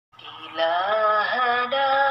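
A solo voice singing the opening phrase of a sholawat, an Islamic devotional song, with backing music: faint at first, then from about half a second in long held notes that slide from one pitch to the next.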